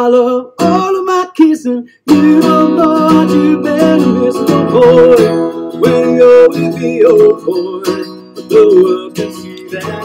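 Playback of a mixed recording of a man singing to his own acoustic guitar, with strummed chords under the vocal line. There is a short break about two seconds in, then the song runs on.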